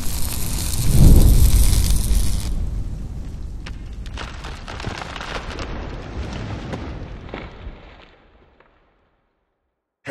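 Cinematic logo-intro sound effects: a swelling rush into a loud, deep boom about a second in with a burst of high hiss, followed by scattered crackles and ticks of sparks and debris that die away.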